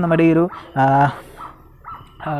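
Only speech: a man's narrating voice says a few short Malayalam words in the first second, then pauses.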